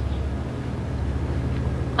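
A steady low hum or drone with no clear pitch changes.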